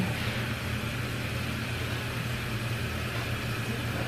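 A steady low mechanical hum with an even background hiss, unchanging throughout, as from a motor or fan running.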